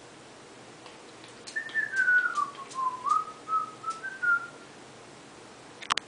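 A person whistling a short phrase of a few notes for about three seconds, sliding down in pitch and then back up. A sharp click comes near the end.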